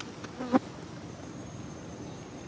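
Insects buzzing around, with a thin high whine setting in about halfway through. A brief, loud sound a quarter of the way in.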